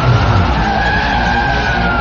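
Pickup truck's tyres squealing in a skid through a sharp turn: one drawn-out screech that rises slightly and then falls, over the low running of its engine.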